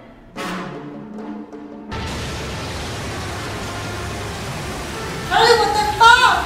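TV drama soundtrack: an underwater blast breaches a porthole about two seconds in, followed by a steady, heavy rush of seawater pouring into a room.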